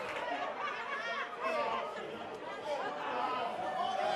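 Indistinct voices of several people chattering at once, quieter than the amplified preaching.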